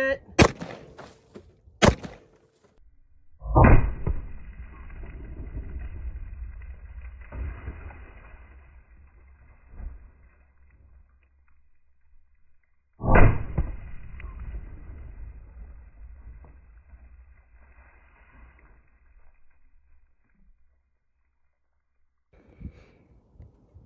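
Two gunshots from an AR-15 pistol about a second and a half apart. These are followed by two long, deep, muffled booms about nine seconds apart, each fading over several seconds, as slow-motion playback of a bullet bursting a gallon jug of water.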